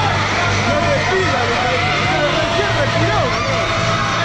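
Crowd of spectators cheering and shouting over one another at a swimming race in an indoor pool hall, many voices at once without a break, over a steady low hum.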